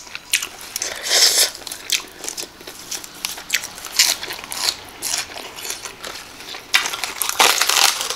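Close-miked crunching and chewing of a mouthful of Thai pounded cucumber salad, coming in several crisp bursts, with lettuce leaves crackling as they are torn near the end.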